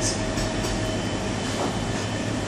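Steady background rumble and hum of the room, with a thin, steady high tone running through it.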